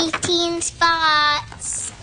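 A young girl's voice singing, holding two drawn-out notes at nearly the same pitch, the second longer and sinking slightly at its end.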